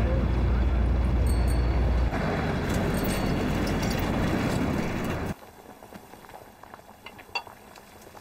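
Low engine rumble heard inside a moving car, giving way after about two seconds to steady street noise. Just past five seconds it cuts off suddenly, leaving a quiet room with a few light clinks of crockery.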